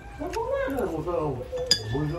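A voice speaking or calling with a pitch that rises and falls, and a single sharp clink of a fork on a plate about three-quarters of the way through.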